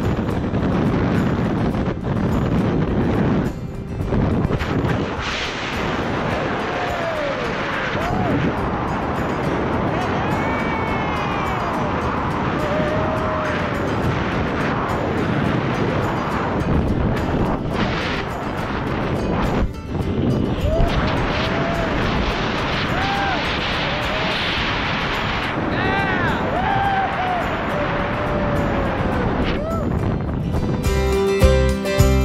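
Wind rushing over the camera microphone under an open parachute canopy, steady through the descent, with short whistling tones that rise and fall in pitch. Music plays underneath.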